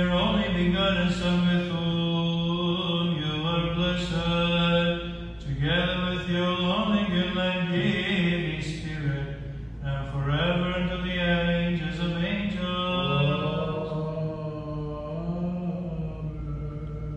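A man chanting Byzantine church chant unaccompanied, in long held, melismatic notes that step slowly up and down in pitch with short breaths between phrases.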